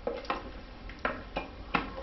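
A plastic water bottle being handled: a handful of light, irregular clicks and crackles from the thin plastic and its cap.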